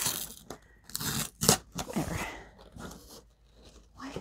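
Packing tape being pulled and torn off a cardboard box as it is opened, in a series of short ripping pulls, with the cardboard crackling.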